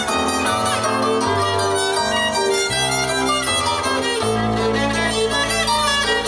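Live acoustic ensemble music: a bowed violin carries the melody over a plucked domra and a steady bass line, with the bass notes changing about every second.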